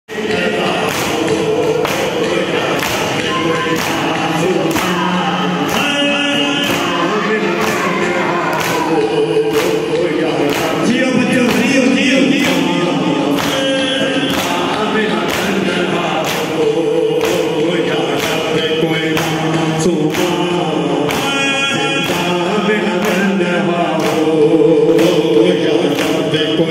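A crowd of male mourners chanting a noha together in Urdu, their voices singing continuously, over a steady beat of hands striking chests (matam), about one and a half strikes a second.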